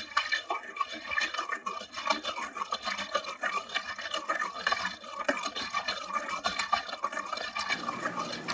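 Opening of an experimental musique concrète spoken-word track, before the voice comes in: a dense, busy run of small clicks and scratchy, clattering noises.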